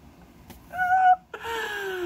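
A woman's voice wailing deliberately bad sung notes: a short, loud high note, then after a brief gap a longer lower note that slides downward.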